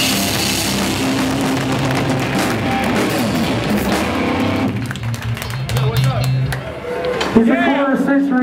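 Hardcore band playing live through amplifiers: distorted guitars, bass and drums in a loud burst that stops about five seconds in, leaving amplifier hum and a sustained low note. A voice comes over the PA near the end.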